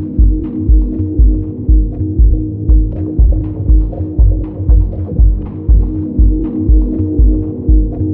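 Deep dub house track: a steady four-on-the-floor kick drum at about two beats a second under a sustained low chord pad, with light percussion ticks on top.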